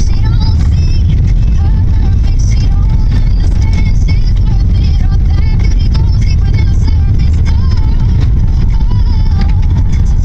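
Loud, steady low rumble of a moving car heard from inside the cabin, with something fainter, voice- or music-like, wavering on top of it.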